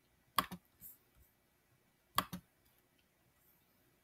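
Computer mouse clicking: a quick pair of clicks about half a second in, a couple of fainter clicks after, and another quick pair a little past two seconds.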